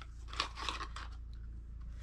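A small cardboard product box being opened by hand and the device inside taken out: a few short crackles and clicks of packaging in the first second, then a faint steady low hum.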